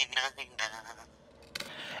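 Recorded a cappella vocal sample playing back from a music production program: a singing voice with vibrato that trails off about a second in.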